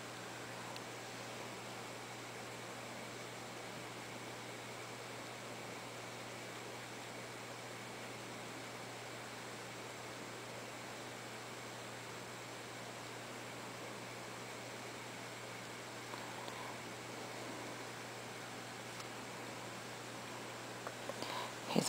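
Steady low hiss with a faint hum: recording noise and room tone, with no distinct event. A faint soft rustle comes about sixteen seconds in.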